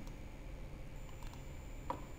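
A few faint computer mouse clicks while menus are opened, the clearest just before the end, over a steady low hum.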